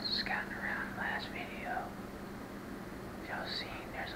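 A man whispering, in short phrases with a pause in the middle, over a steady low hum.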